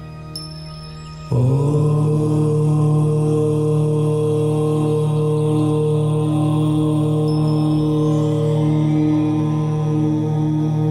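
A long chanted "Om" in a low voice, beginning suddenly about a second in and held as one steady tone. It follows the fading end of the previous tone.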